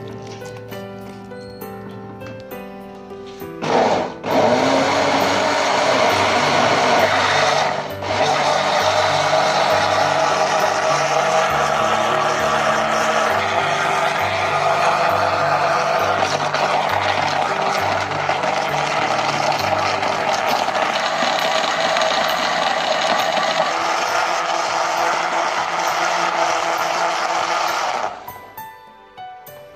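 Electric countertop blender running, pureeing watermelon chunks into juice. It starts about four seconds in, cuts out for a moment near eight seconds, then runs steadily, louder than the background music.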